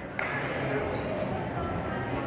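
A basketball bouncing on a hardwood gym floor, one sharp bounce just after the start, over echoing crowd chatter in the gymnasium.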